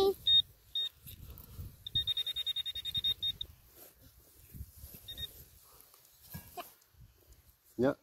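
Handheld Garrett pinpointer beeping: two short beeps, then a fast run of beeps for about a second and a half, then one more beep. Fast beeping is the pinpointer's sign that its probe is close to metal in the dug hole.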